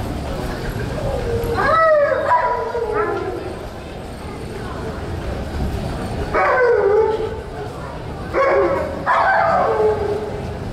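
A dog gives short howling yips whose pitch sweeps up and then falls, in three bouts: one near the start, then two more in the second half.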